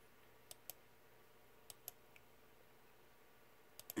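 Near silence broken by faint computer clicks, mostly in close pairs about a second apart, as a movie on screen is stepped forward frame by frame.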